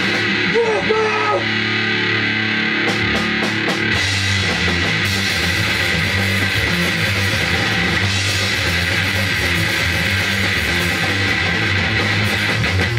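Grindcore band rehearsing loudly: distorted electric guitar rings with bending notes at first, four quick clicks come around three seconds in, and the full band of distorted guitar, bass guitar and drums starts playing about four seconds in, with a wash of cymbals from about eight seconds.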